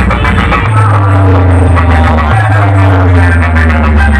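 Loud DJ dance music with a heavy droning bass line that changes note twice, over a dense rhythmic backing.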